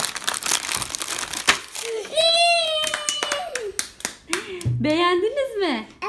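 Crinkling of a plastic bag of toy surprise eggs being pulled open by hand for the first two seconds. After that a child's high voice sounds twice in long, drawn-out calls.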